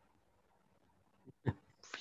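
Faint room tone over a video call, broken about one and a half seconds in by two very short sharp sounds, then a person's voice starting just before the end.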